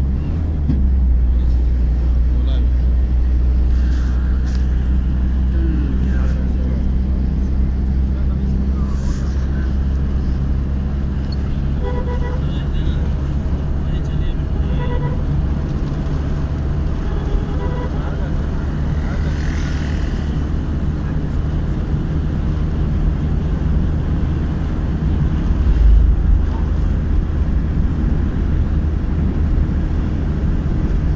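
Motorcycle engine running steadily at cruising speed, with wind rushing past the microphone. A few short horn beeps sound in the middle.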